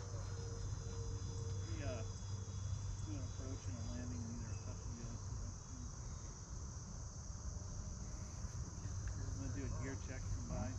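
Crickets chirring in a steady high-pitched drone over a low steady hum, with faint distant voices now and then.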